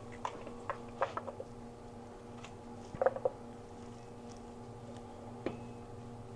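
A few light clicks and knocks as a plastic food-processor bowl is handled and shredded raw potato is dropped into a cast iron skillet, with a small cluster about a second in, another around three seconds in and a single knock near the end. A steady low hum runs underneath.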